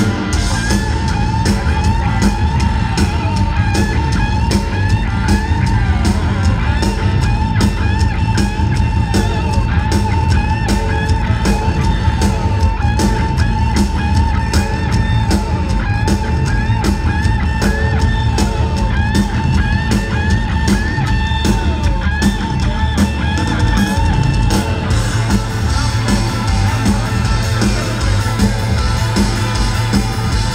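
A rock band playing live: guitar over a steady drum beat, loud and unbroken.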